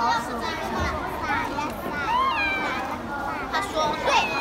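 Several children's voices talking over one another, high-pitched and overlapping, with no one voice standing out.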